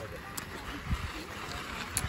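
Steady outdoor background hiss with a few low thumps, and a faint voice near the end.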